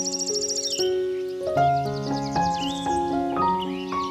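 Slow solo piano music, sustained notes struck one after another, over a nature-sound bed of chirping birds and a fast pulsing insect trill that drops out about a second in.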